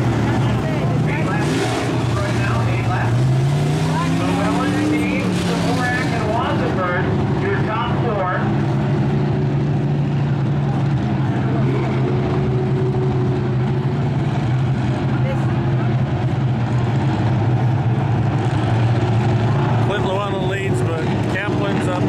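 Dirt-track modified race cars running slowly under a caution, a steady engine drone. A few seconds in, one car's engine rises and then falls in pitch as it passes. A voice is heard over the engines early on and again near the end.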